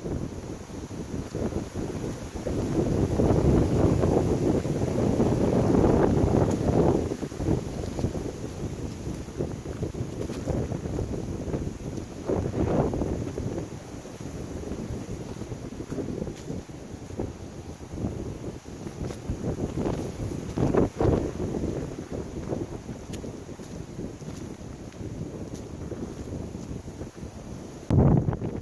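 Gusty wind buffeting the microphone, a low rumble that swells and fades, strongest a few seconds in and again in a short gust about three-quarters of the way through.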